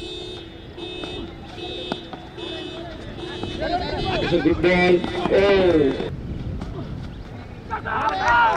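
A repeating electronic beep, about one and a half beeps a second, for the first three and a half seconds. Then men shouting for about two seconds.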